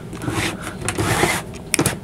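Wooden overhead cabinet doors opened by hand: a rustling scrape, then a few sharp clicks close together near the end as the catch lets go and the doors swing open.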